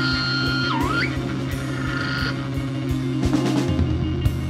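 Live rock band playing an instrumental jam: electric bass and drum kit under a held high lead tone. The lead tone swoops down and back up about a second in, and sounds again briefly around two seconds.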